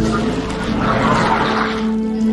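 A whooshing noise that swells up and fades away over held notes of background music.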